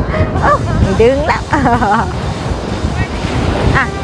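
Small waves washing up onto a sandy beach at the water's edge. A man's voice is heard over the first half and briefly near the end.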